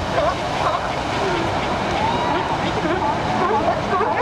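Ocean surf washing against the rocks, a steady wash. Over it runs a busy scatter of short vocal sounds that glide up and down in pitch.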